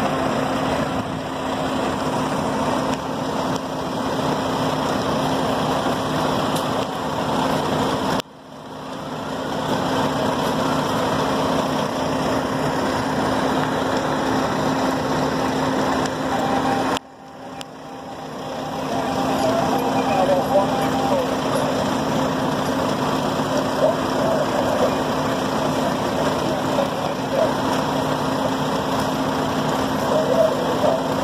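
Fire engine's diesel engine running steadily, a constant hum under a noisy background. The sound cuts out abruptly about eight seconds in and again about seventeen seconds in, each time fading back up.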